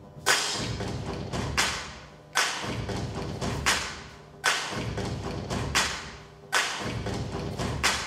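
Dance music built on heavy drum strikes, each hit ringing out and fading, in a repeating pattern of long and short gaps, about eight strikes in all, over a faint sustained note.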